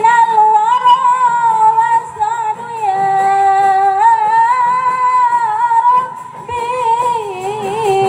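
A woman singing a qasidah into a microphone, long held notes with vibrato joined by ornamented melismatic turns, one long note held for about three seconds in the middle.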